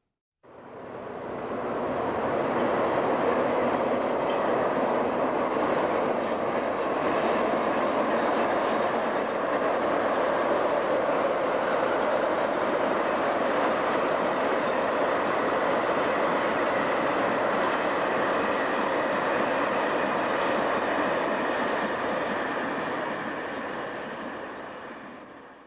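Steady running noise of a moving train, fading in about half a second in and fading out at the very end.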